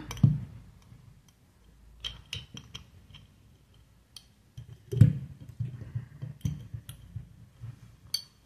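Limes being pushed into a glass jar on a cloth-covered table: scattered knocks and glassy clinks, the loudest a knock about five seconds in.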